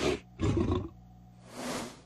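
Cartoon bulldog's heavy, rasping breaths, three in a row of about half a second each, the second the loudest and deepest.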